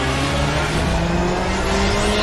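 Car engine revving sound effect, rising slowly and steadily in pitch over a dense rushing noise.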